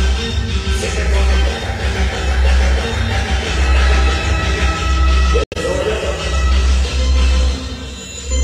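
Loud dance music with heavy, pulsing bass, played over a large sonido sound system. The sound cuts out for an instant about five and a half seconds in.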